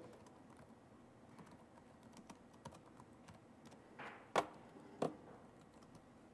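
Faint typing on a computer keyboard, a run of light key clicks, with two louder clicks between four and five seconds in.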